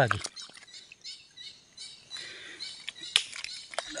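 Hands digging in wet mud under shallow water: scattered small wet clicks and squelches, with a short splashy rush about two seconds in.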